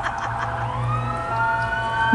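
A siren-like wail: a tone that rises over about a second and then levels off into a steady held note, with several other steady tones and a low hum beneath it.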